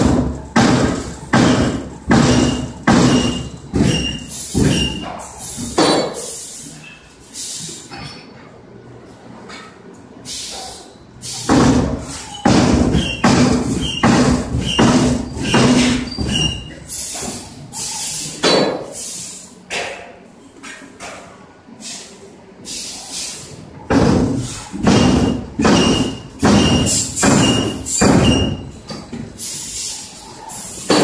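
Screw presses forming silica refractory bricks, striking in runs of heavy blows about two a second with pauses between runs, echoing in a large hall.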